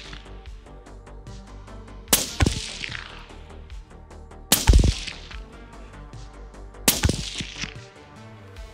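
Three shots from a suppressed Q Fix bolt-action rifle, about two and a half seconds apart, each a sharp crack with a short ringing tail. Faint background music runs underneath.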